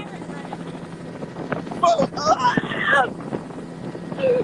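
Helicopter rotor and engine running steadily, heard from inside the cabin in flight. A person's voice calls out briefly about two seconds in.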